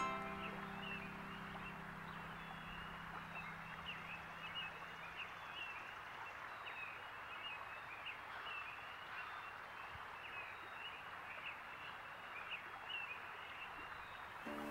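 Plucked harp notes ringing and dying away over the first few seconds, then a faint nature background: a soft steady hiss with many small bird chirps scattered through it.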